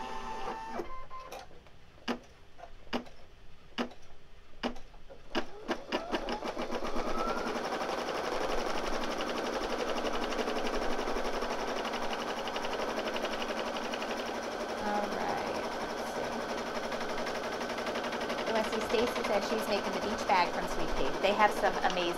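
Brother Innov-is computerized embroidery machine stitching the outline of a triangle through quilt batting in the hoop. It starts with a few separate needle strokes, then from about six seconds in settles into a fast, steady stitching rhythm.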